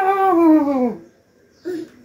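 A baby's long, drawn-out vocal sound, one held note falling slowly in pitch, that stops about a second in. A short vocal sound follows near the end.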